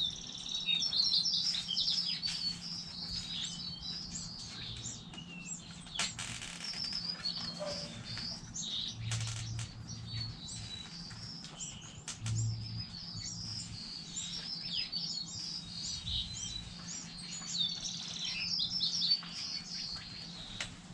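Small birds chirping in quick runs of short, high calls throughout, busiest near the start and again near the end, with scattered sharp clicks and taps in between.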